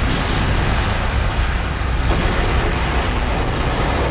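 Aftermath of a large explosion: a sustained, heavy low rumble with crackling noise above it, easing off only slightly.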